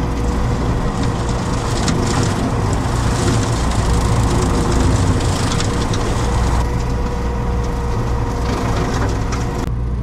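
Tractor engine running under load while a hydraulic side-mounted rotary cutter shreds dry grass and brush, a dense crackling of chopped stems and debris over a steady drone and a faint steady whine. The crackling drops off abruptly just before the end.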